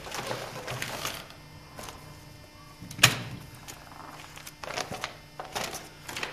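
Papers and photographs being handled and shifted about, with one sharp tap about three seconds in.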